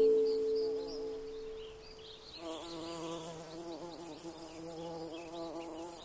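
Bumblebee buzzing, a steady drone that wavers up and down in pitch, coming in about two seconds in as held music chords fade away. Faint bird chirps sound in the background.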